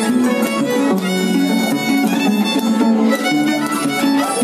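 Violin and Andean harp playing a huayno: the bowed violin carries the melody over plucked harp bass notes, with no singing.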